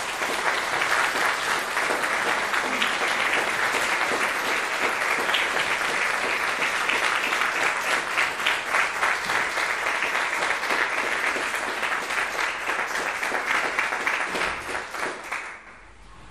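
Congregation clapping: sustained, dense applause that tails off near the end.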